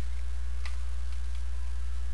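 Steady low electrical hum on the recording, with a few faint ticks.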